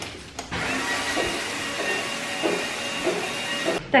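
Electronic bidet toilet seat switched on at its side-panel button: a motor starts about half a second in with a whine that rises in pitch, then runs steadily with a rushing noise until it stops just before the end.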